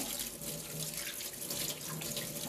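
Water running steadily from a kitchen tap, splashing over hands and into a stainless steel sink as soap is rinsed off.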